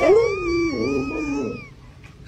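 Husky-type dog howling: one long, wavering howl that dips in pitch partway through and fades out near the end.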